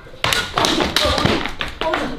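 A rush of thuds and scuffling from people throwing themselves flat onto the ground, lasting about a second and a half, with a cry of "ôi" near the end.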